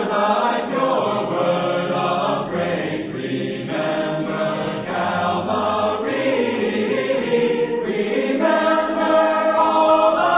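Church congregation singing a slow hymn a cappella in several parts, with long-held notes.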